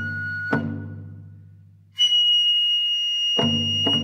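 Traditional Japanese music: a bamboo flute holds long high notes, a new and louder one entering about halfway, while a drum is struck three times, each stroke ringing on low.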